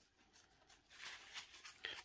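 Near silence: room tone, with a few faint soft sounds in the second half.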